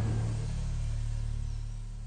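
A low, steady drone with a fading rushing noise over it, the dying tail of a louder swell.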